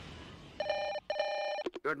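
A telephone ringing twice in quick succession, each ring about half a second of a fast, trilling tone, followed by a couple of clicks.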